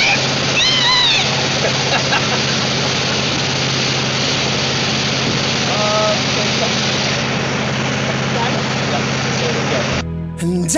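Motorboat engine running steadily while towing a skier off the boom, under loud rushing wind and water spray. Short high-pitched voice sounds come about a second in and again about six seconds in.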